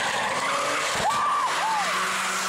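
Car tyres squealing twice during slalom driving: two short squeals that rise and fall in pitch, over a steady outdoor hiss.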